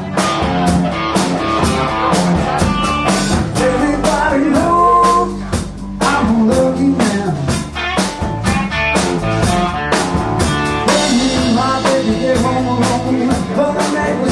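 Live blues-rock band playing: electric guitar, bass guitar and drum kit, with a steady drum beat and notes that bend in pitch. The music dips briefly about six seconds in.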